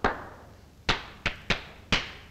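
Hard-soled shoes stepping on a bare floor: five sharp, unevenly spaced knocks in two seconds, each with a short ringing echo.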